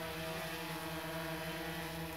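Quadcopter drone hovering, its rotors giving a steady hum with several even tones.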